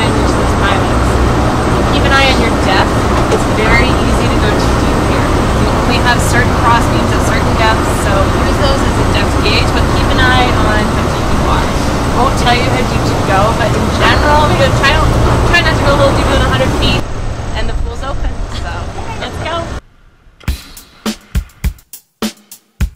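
Steady low hum of an idling boat engine under people talking. Near the end it cuts to music with a regular drum beat.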